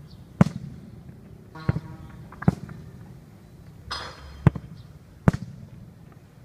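A football being kicked and struck: five sharp thuds at uneven intervals.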